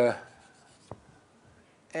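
Writing on a lecture board, mostly quiet, with one sharp tap of the writing tool about a second in.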